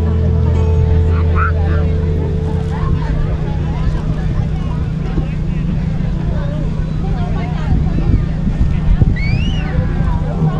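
A live band holding a low sustained note through the PA, under crowd chatter and rumbling wind noise on the camera's microphone, between songs. Near the end a single high rising-and-falling whoop cuts through.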